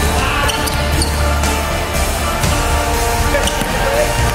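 Basketballs dribbled on a hardwood gym floor, a few sharp bounces, over loud background music with a steady heavy bass.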